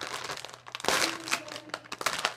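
Clear plastic packaging bag of a squishy toy crinkling as it is pulled open and handled, loudest about a second in.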